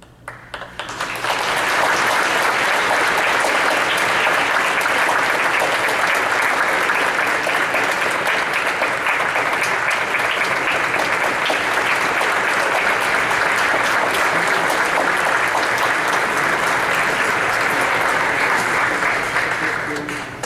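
Audience applauding: a few scattered claps that swell into full, steady applause about a second in and begin to taper off near the end.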